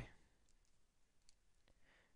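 Near silence with a few faint clicks.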